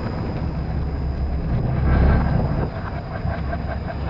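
Electric twin-shaft shredder running, its steel cutter discs turning with a steady, low mechanical rumble as they work on a plush toy.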